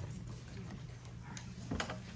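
Light knocks and handling noises from people settling at a grand piano, over a steady low room hum. The loudest is a single sharp knock near the end.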